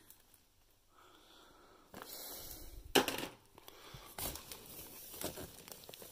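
Rummaging through stock in a cardboard box: rustling and scraping of cardboard and packaged items, with one sharp knock about three seconds in. The first two seconds are nearly silent.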